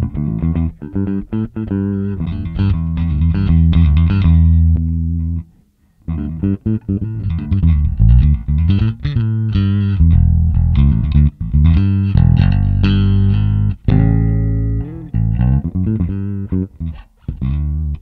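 Electric bass guitar playing a riff through a Two Notes Le Bass tube preamp pedal, heard through a PA cabinet via the pedal's DI output. The playing stops briefly about six seconds in, and after that the pedal's preamp A channel is switched on.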